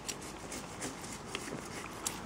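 Faint rustling with scattered light clicks: a horse shifting among leaves and branches in woodland undergrowth.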